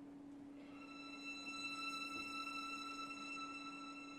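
Quiet film-score music: a single high violin note enters about half a second in and is held steadily, over a faint steady low tone.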